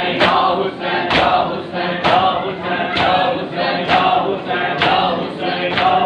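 Matam: a group of men chanting a mourning lament in unison, with the sharp slap of many palms on chests landing together about once a second in time with the chant.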